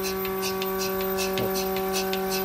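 Mini milking machine running on a cow: a steady electric motor hum from its vacuum pump, with faint regular hissing ticks about three times a second.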